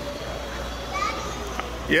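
Background chatter of children's and adults' voices over a steady low hum, with one voice loud and close right at the end.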